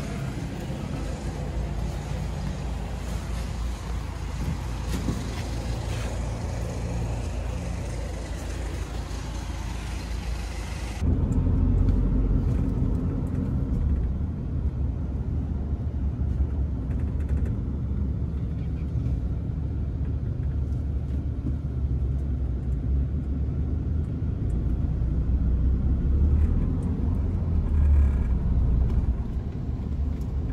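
Car noise: a steady engine hum with a hiss over it, then about eleven seconds in an abrupt change to a louder, deep, steady rumble, like road noise heard from inside a moving car.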